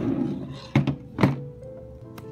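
Background music with three short dull thumps, the last about a second and a quarter in.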